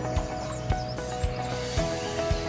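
Background music: held chords over a steady beat of about two low thumps a second.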